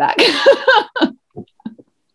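A woman laughing: a breathy burst of laughter right after a spoken word, trailing off in a few short, fading laugh pulses and stopping just before the end.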